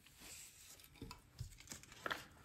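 Faint rubbing and crinkling of thin rice paper under a hand baren pressed onto a gel printing plate, with a few light ticks in the second half.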